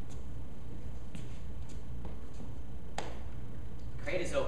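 Room tone with a steady low hum, broken by a few faint taps and one sharper click about three seconds in.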